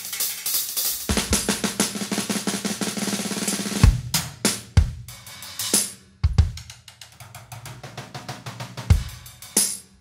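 Drum kit played in a groove. For the first four seconds there is a dense run of fast strokes on the drums, ending in a heavy bass drum and cymbal hit. After that the playing thins out to scattered bass drum and cymbal accents over quieter quick strokes.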